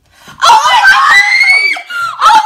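A young woman's loud, high-pitched scream of joy at seeing her college acceptance, starting about half a second in and rising slightly in pitch, then breaking off just before a second scream begins.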